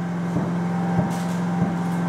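Generator engine running with a steady, even hum, and three soft thumps about half a second, one second and a second and a half in.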